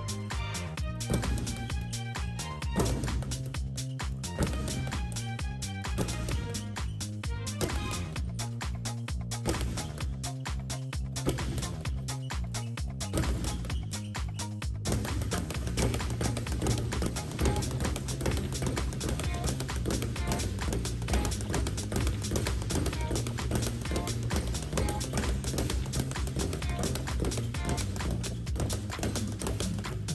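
Background music with a steady beat, over the rapid rhythmic drumming of a speed bag being punched against its wooden rebound board. The bag is worn and has lost its balance from the beating.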